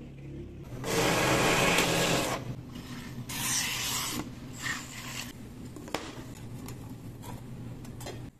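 Handling noises from hands-on craft work: a loud rasping, rubbing burst lasting about a second and a half, a shorter second burst, then quieter rustling with a single sharp click about six seconds in.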